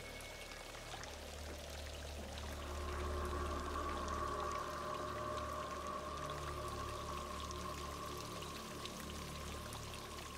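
Water pouring and dripping steadily over a constant low hum. About two and a half seconds in, a held tone swells in and sustains.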